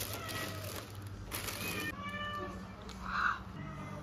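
A kitten meowing a few times, one call rising and falling in pitch, the loudest near the end, mixed with the crinkly rustle of a plastic bag being handled.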